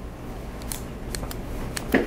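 A handful of light, sharp clicks a few tenths of a second apart in the second half, over steady room noise.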